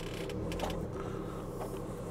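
Low, steady rumble of a VW Crafter campervan's diesel engine idling, heard from inside the cab, with a few faint clicks.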